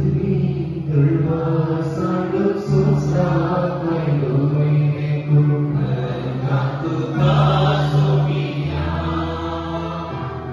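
A slow, repetitive Taizé chant sung by a voice into a microphone over sustained keyboard chords. The chords change every two seconds or so.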